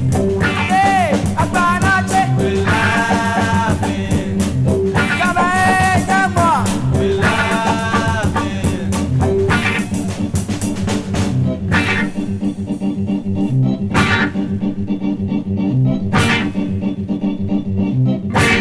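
Late-1960s Ghanaian afrofunk band recording: sung vocal phrases over electric guitar, bass and drum kit for about the first half, then the band playing on without vocals, with sharp drum accents.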